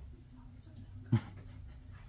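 A single short, sharp thump about a second in, over faint room murmur.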